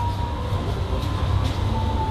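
A steady low rumble with a hiss over it and a faint thin tone.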